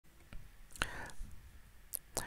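A few faint clicks, the last and sharpest just before the end, with soft breathy noise between them.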